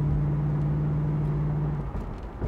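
The Corvette's 350 LT1 V8 under acceleration, heard from inside the cabin: a steady low drone that drops away abruptly near the end.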